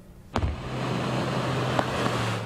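Pickup truck driving through deep floodwater, its tyres throwing up a heavy spray: a loud rush of splashing water over a steady low engine hum. It starts abruptly about a third of a second in.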